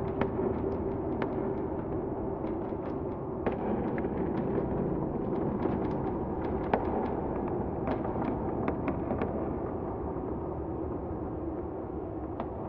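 A steady low rumble with a faint held hum, and many short, sharp crackles and pops at irregular intervals, roughly one or two a second.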